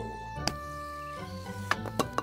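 Soft background music with held notes, with a sharp click of a golf putter striking the ball about half a second in and a smaller click near the end.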